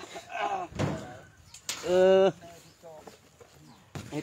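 A person's voice in short bursts, with a dull thump about a second in and one louder held vocal sound near the middle.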